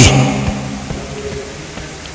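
A man's voice over a microphone ends a word on a drawn-out vowel that fades within about half a second, then a pause with only a faint steady hum and a small click.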